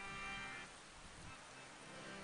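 Harmonium played softly in sustained reedy chords, with the notes thinning out about two-thirds of a second in.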